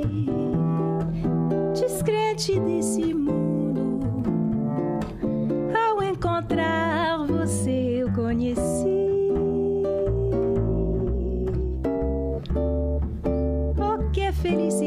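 Bossa nova played on ukulele and pizzicato upright double bass, with a wordless vocal line gliding and wavering over the chords.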